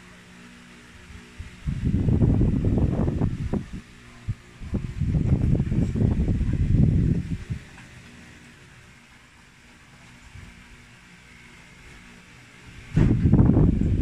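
Loud low rumbling on the phone's microphone, from handling or air passing over it, in three bursts: about two seconds in, about five seconds in, and again near the end. A quieter steady hiss lies between the bursts.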